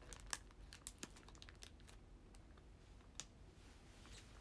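Faint crinkling of a food wrapper being handled: a cluster of crackles over the first two seconds, then one more crackle near the end.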